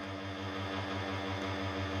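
Table-tennis robot's motor humming steadily, with a rapid, regular low throb.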